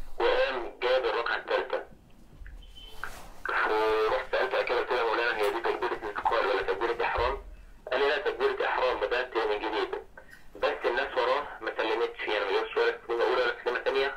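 A caller's voice speaking Arabic over a telephone speakerphone, thin and narrow-sounding, with a few short pauses.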